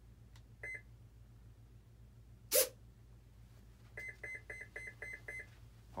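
Radio-control transmitter beeping while binding to the receiver: one short beep, then a quick run of about seven identical short beeps at roughly five a second near the end. A single sharp click about halfway through is the loudest sound.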